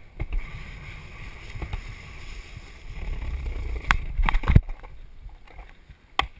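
Skateboard wheels rolling over concrete pavement with a steady low rumble, then several sharp clacks about four seconds in as the board is stopped, after which the rolling dies away.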